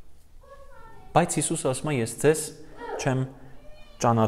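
A man's voice speaking, preceded about half a second in by a faint, short, high call that falls in pitch.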